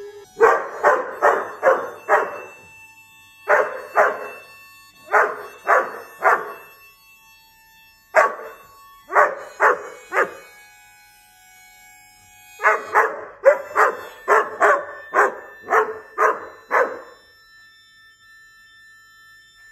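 A dog barking in quick runs of sharp barks, about two to three a second, with short pauses between runs; the longest run, near the end, has about ten barks.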